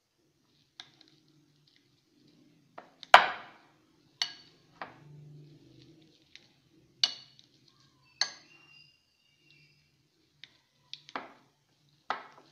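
Metal potato masher knocking against a glass bowl while mashing boiled potatoes: about six irregular, sharp clinks, the loudest about three seconds in, some leaving a brief glassy ring.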